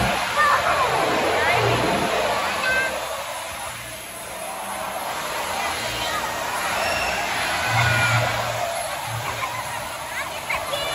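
A crowd of children and adults talking and calling out at once, with short high children's squeals, over a steady rushing noise and background music.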